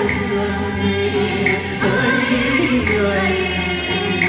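A Vietnamese chèo-style folk song sung live: singing voices with long held notes over instrumental backing.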